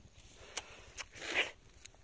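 Leafy longan branches being handled by hand: a few faint rustles and light clicks, with a short raspy swish about a second and a half in.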